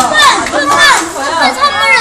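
Several young children's voices, high-pitched chatter and calls of children at play.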